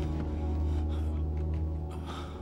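Suspenseful film score music: a deep bass note is held under quieter layered tones and fades away near the end.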